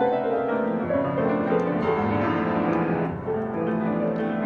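Solo piano playing a free, atonal improvisation, with many notes overlapping and ringing together without a break.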